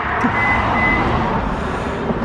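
A vehicle driving past on the street: an even rush of tyre and road noise over a low rumble, with two short high beeps in the first second.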